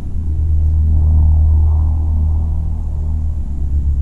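Low, steady rumble of a car heard from inside its cabin, the car sitting in neutral.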